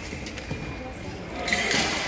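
Fencers' footwork on the piste, dull thuds of shoes, with voices echoing in a large sports hall, and a louder burst of noise in the last half second.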